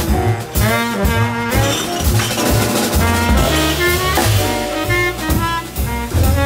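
Live small-group jazz: a saxophone plays quick running lines over piano, upright double bass and a drum kit, with cymbals.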